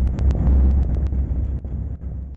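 Low, steady road and engine rumble of vehicles on the move, heard from inside a following car's cabin, with a few light clicks in the first second.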